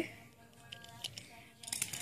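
Quiet room with faint, steady tones of background music, and a few light clicks near the end as the small plastic fairy toy is handled.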